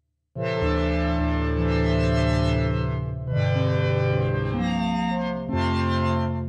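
Synthesized pipe organ, an MPE preset in Ableton Live played from a ROLI Seaboard RISE, holding sustained chords. The sound starts a moment in and the chord changes three times.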